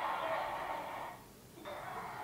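Audio from a film playing: a steady wash of sound with faint murmured voices, dropping away briefly just after a second in.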